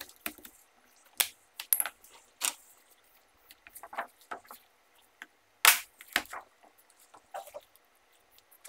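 Scattered light clicks, taps and rubbing as gloved hands press a new polarizer film onto a bare LCD panel with a cloth-wrapped tool. The sharpest click comes about two-thirds of the way through.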